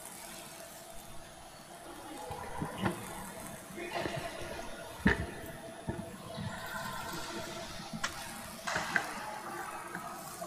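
Faint rustling and shuffling in a church, with scattered knocks and clicks. The sharpest knock comes about halfway through.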